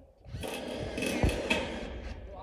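Corded electric drill (roofing screw gun) whirring briefly, its pitch wavering.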